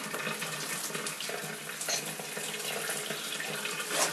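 Shower running, a steady hiss of water spraying into a shower stall.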